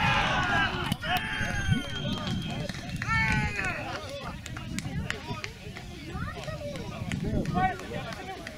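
Several men shouting and yelling in celebration of a goal just scored, the loudest cries in the first half-second and again around three seconds in, with scattered shouts after.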